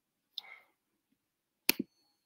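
A brief soft hiss, then two sharp clicks about a tenth of a second apart near the end.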